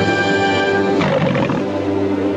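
The MGM lion roaring in the studio's logo opening, over an orchestral fanfare holding a brass chord. The roar comes about a second in.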